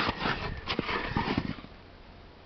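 Weathered wooden hive board being handled, scraping and rustling with a few light knocks, stopping about a second and a half in.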